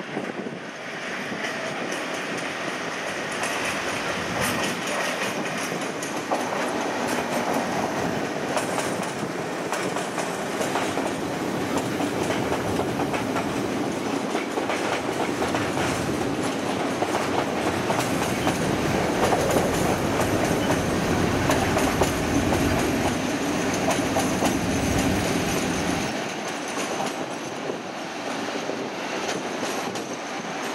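Colas Rail Freight Class 56 diesel locomotive and its tank wagons passing close by on jointed track and pointwork. The engine runs and the wheels clatter, growing louder toward the middle. The deepest rumble drops away suddenly about 26 seconds in as the train moves off.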